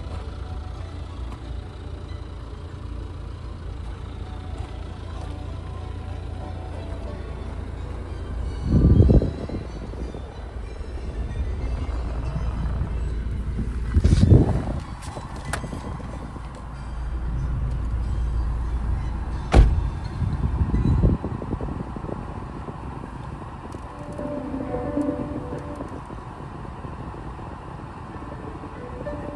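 Car radio playing classical music quietly over a steady low rumble, with a few dull thumps and one sharp knock about two-thirds of the way through; the music grows clearer near the end.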